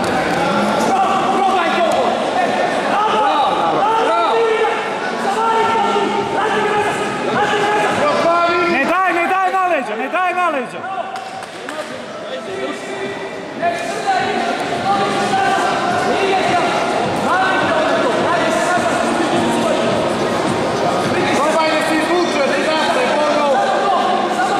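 Several men shouting and calling out over one another, coaching and cheering from the side of the mat.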